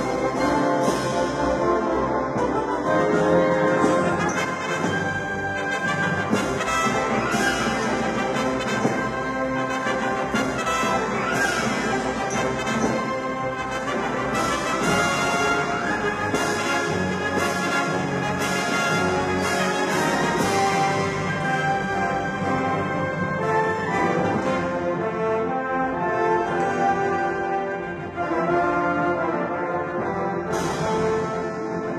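Orchestral film score playing continuously, with prominent brass: trumpets and trombones carrying sustained melodic lines over the full orchestra.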